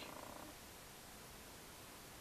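Near silence: faint, steady room tone and hiss.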